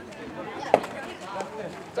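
A single sharp knock about three-quarters of a second in as a pitched youth baseball reaches the catcher, over faint voices.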